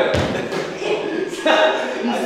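A single deep thump just after the start, then voices talking indistinctly.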